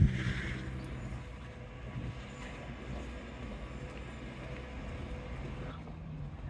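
Road traffic: a steady low hum of vehicle engines and tyres.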